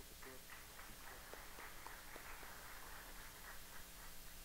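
Faint, scattered applause from an audience: many light claps blending into a soft patter that builds after the first second and dies away near the end.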